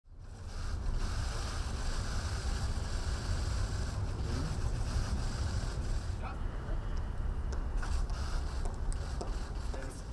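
Wind buffeting an outdoor microphone: a steady low rumble with a hiss above it, the hiss thinning about six seconds in.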